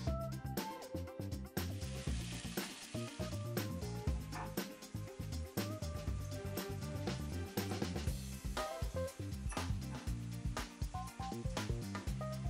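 Background music, a melody of short notes over a bass line, with vegetables and olive oil sizzling in a foil-covered wok on low heat.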